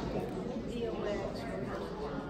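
Many people talking at once in a lecture hall: overlapping conversation with no single voice standing out.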